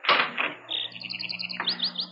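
Sound effect of a door being opened, a short sharp burst at the start, then birds chirping in quick repeated high notes over a low steady hum, as if the door has opened onto the outdoors.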